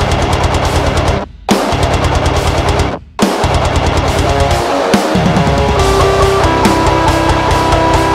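High-gain distorted electric guitar, an ESP LTD EC-256 through the Metal Area distortion plugin, playing fast palm-muted chugging riffs that break off twice. From about six seconds in it moves to longer held notes.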